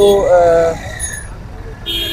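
Busy road traffic: vehicle engines and general street din beside a truck, with a man's voice briefly at the start and a short hiss near the end.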